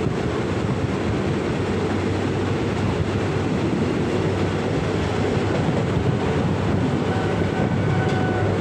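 Steady running rumble of a moving passenger train, heard from inside a carriage: wheels on the rails and the hum of the train. A faint high tone comes in near the end.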